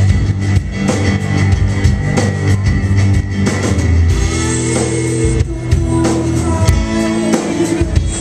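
Live indie rock band playing: electric guitars, bass guitar and drum kit, with a steady drum beat throughout.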